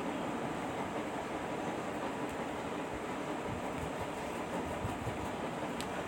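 A steady, even background noise with no speech.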